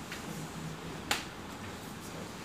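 A single sharp click about a second in, over a faint steady background hiss.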